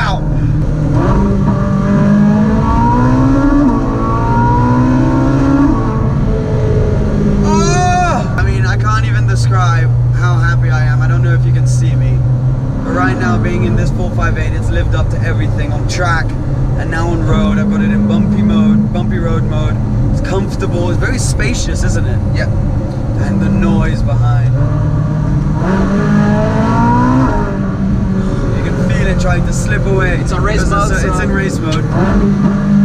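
Ferrari 458 Spider's 4.5-litre V8 heard from inside the cabin, revving up with rising pitch through a couple of gearchanges in the first few seconds and again near the end, and holding steady revs in between.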